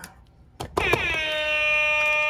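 A loud, sustained horn-like tone with many overtones. It starts just after a click about three quarters of a second in, dips in pitch at its start, and then holds steady.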